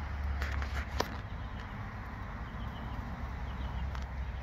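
Low rumble of wind and handling noise on a handheld phone's microphone, with a few sharp clicks within the first second and faint, short high chirps in the second half.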